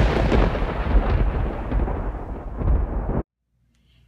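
A loud, rumbling, crackling sound effect over the opening title card, heavy in the low end, cutting off suddenly a little over three seconds in.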